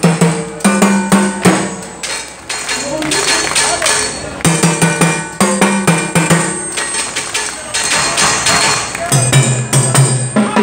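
Live salsa band: timbales and cymbal struck with sticks in quick phrases traded between percussionists, with held notes from the band sounding in between the bursts of strikes.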